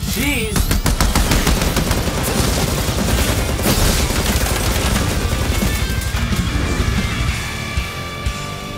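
Rapid machine-gun fire and blast sound effects, densest in the first few seconds, over loud fight music.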